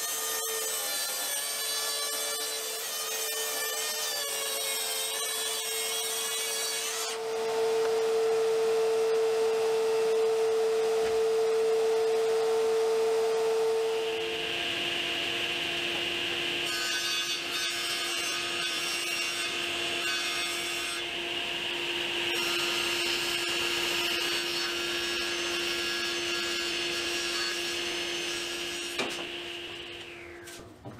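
Plunge track saw running and cutting plywood along its guide rail, its motor a steady whine. About 14 seconds in it gives way to a table saw running at a lower pitch and cutting wood, which starts to wind down near the end.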